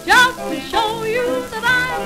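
1920s hot jazz played from a 78 rpm gramophone record: a small jazz band, with a lead line that swoops up into a loud note at the start and then holds wavering notes over the accompaniment.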